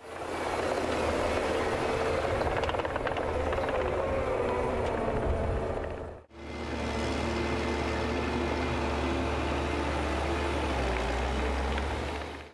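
Diesel engine of a MOB-FLEXTRAC tracked carrier running steadily with a low drone. The sound fades out briefly about six seconds in and comes back.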